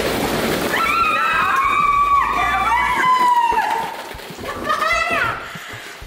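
A shower of plastic ball-pit balls pattering down. Two people then let out long, high squeals together for about three seconds, with a shorter squeal near the end.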